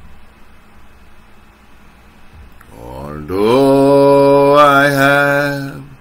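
A man's voice singing a gospel hymn: after a quiet first half, it rises into one long held note that stops just before the end.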